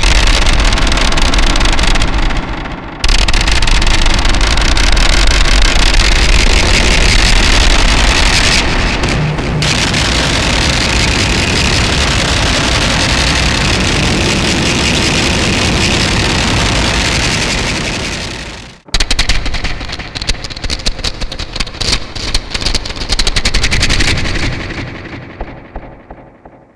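Drumsticks hitting the metal enclosure of a fuzz pedal with a built-in piezo contact mic, the hits driven through harsh octave-up distortion and a chain of effects pedals into a loud, dense wall of noise. It holds steady, fades and cuts off about 19 seconds in, then comes back as choppy stuttering bursts that fade away near the end.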